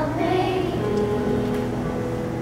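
Fifth-grade children's choir singing, holding sustained notes.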